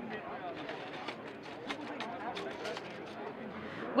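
Hubbub of many voices in a crowded hall, with scattered light clicks and knocks as a metal honeycomb grid is slid out of a large LED soft panel light.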